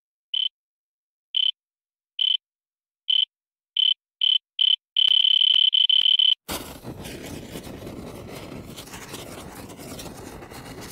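Electronic beeps, all at one high pitch, coming faster and faster, from about one a second to several a second, then merging into one long beep about halfway through. The beep cuts off suddenly into a dense rushing, crackling noise effect that runs on steadily.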